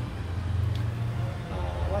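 A steady low rumble, with a man's hesitant voice near the end.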